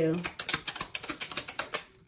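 Tarot deck being shuffled: a rapid run of crisp card clicks, about ten a second, fading out near the end.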